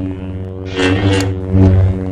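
Logo intro sting: a deep, steady drone with held low tones, with a whooshing swell and a sharp hit about a second in.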